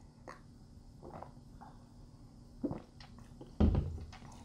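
Faint sips and swallows of beer from a glass, then a stemmed glass set down on a tabletop with a dull knock near the end.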